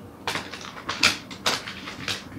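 A deck of oracle cards being shuffled by hand: a quick run of sharp card snaps and riffles, about six or seven in two seconds.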